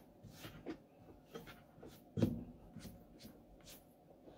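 Faint scattered clicks, taps and rustles of hands working at a studio desk and its gear, with one louder knock about two seconds in.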